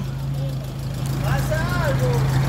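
Steady low hum of car engines idling in street traffic, with a faint voice about a second and a half in.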